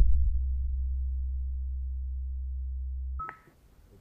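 A low, steady rumble that fades slowly and is cut off abruptly a little after three seconds in, followed by a short high beep.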